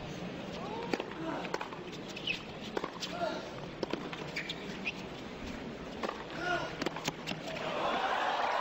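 Tennis rally on a hard court: a string of sharp racket strikes and ball bounces, irregularly spaced through the rally, with short player grunts on some of the shots.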